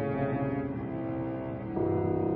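Cello playing long, low, sustained bowed notes, with a change of note near the end.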